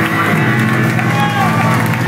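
Loud live rock band with guitar and bass holding sustained, ringing notes that change pitch about a third of a second in, and crowd voices shouting over the music.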